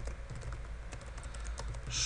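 Computer keyboard typing: a quick run of light keystrokes, over a steady low hum.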